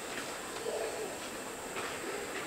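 Faint bird calls with low cooing notes, over a steady high hiss.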